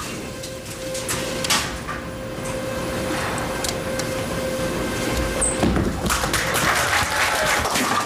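Bowling ball rolling down a wooden lane with a low rumble, then striking the pins for a spare conversion about six seconds in: a dense clatter of pins, with crowd applause and cheering after it.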